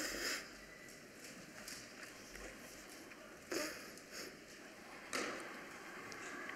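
A man's short, sharp breaths through the nose close to a microphone, three times: at the start, about halfway through and near the end. They are stifled laughter.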